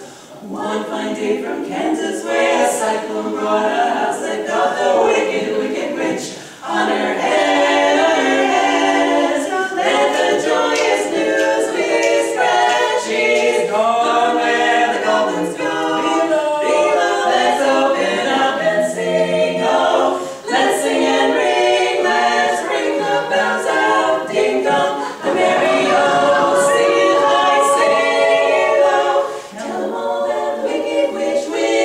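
Four-voice women's a cappella quartet singing in harmony, with short breaks between phrases about six, twenty and thirty seconds in.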